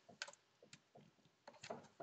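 Faint clicks and light knocks of a small tabletop reflector telescope being handled, as hands work at its focuser and swing the tube upright on its base. The loudest knocks come about one and a half seconds in.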